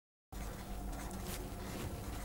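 Dead silence at an edit for the first third of a second, then a steady low electrical hum with room hiss, and faint scratching of a felt-tip marker writing on paper.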